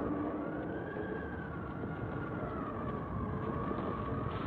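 Eerie sound effect: a steady low rumble with a thin tone that slowly rises and falls above it.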